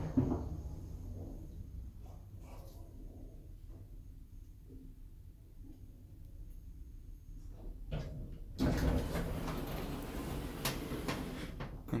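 A lift car's automatic sliding doors moving, starting suddenly about two-thirds of the way in after a stretch of low hum from the car.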